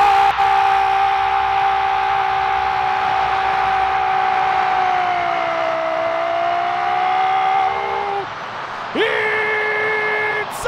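Football commentator's goal cry: one long held shout lasting about eight seconds that sags slightly in pitch, then a second held call starting with a rising swoop near the end. A stadium crowd cheers underneath.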